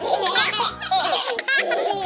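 Baby doll characters laughing, several voices at once, over light children's background music.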